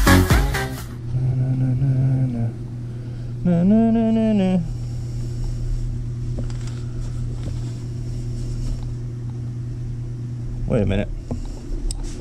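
Electronic dance music ends about a second in, giving way to a steady low hum, with a short pitched voice-like tone that rises and falls about four seconds in.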